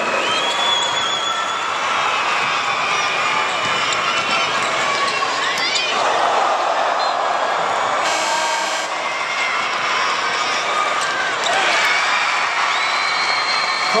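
Basketball game noise in an arena: crowd murmur and voices throughout, sneakers squeaking on the hardwood court and the ball bouncing. A short buzzing sound comes about eight seconds in.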